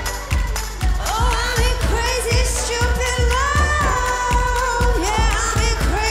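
Pop dance track performed live, with a steady pounding beat a little over twice a second and sung vocal lines sliding up and down in pitch.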